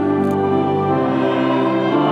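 A mixed church choir and a violin performing a slow hymn, the voices and violin holding long chords that change every second or so.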